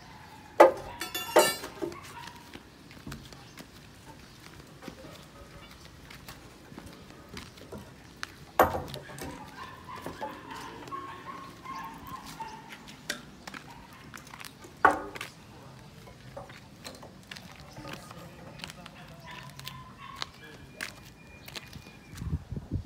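Construction-site work sounds: scattered sharp knocks and a ringing metallic clang, with faint voices in the background.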